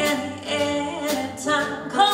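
Live jazz band playing, with a female voice singing over piano, double bass and drums; cymbal strokes land about once a second.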